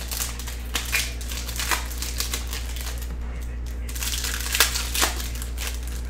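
Foil trading-card pack wrapper crinkling and the cards being handled on the table, in irregular rustles and light clicks, over a steady low hum.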